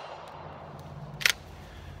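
The echo of a Glock 19's last pistol shot fades away, then one sharp click sounds about a second and a quarter in, from a gun whose slide does not lock open on the empty magazine.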